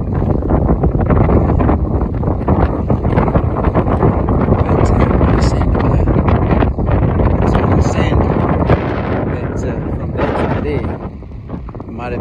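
Wind buffeting the microphone: a loud, gusting rumble that eases off briefly near the end.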